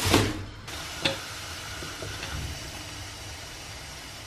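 A plastic bag rustles briefly at the start. Then a steady hiss follows, the gas burners under a kettle and teapot, with a single light click about a second in.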